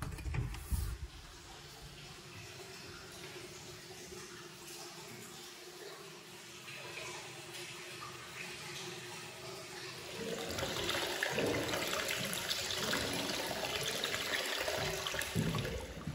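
Hot-spring water pouring steadily into an indoor onsen bath, a running-water hiss that grows clearly louder about ten seconds in. A couple of thumps at the very start.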